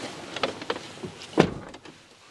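Land Rover Defender's driver's door shutting with a solid thud about one and a half seconds in, after a few lighter clicks and knocks from someone getting into the seat.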